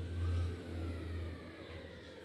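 A low, steady engine-like hum, loudest in the first second, fading after about a second and a half.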